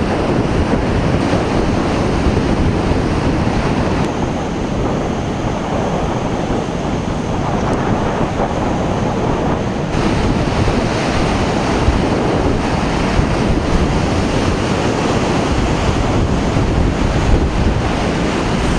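Strong storm wind buffeting the microphone over rough sea surf washing against the shore, a loud, continuous rushing noise heavy in the low end.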